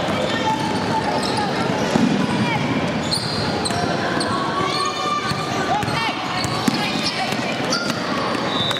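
Basketball game in a gym: a basketball bouncing on the hardwood floor and sneakers squeaking as players run, over a steady hum of spectators' voices and shouts in a large echoing hall.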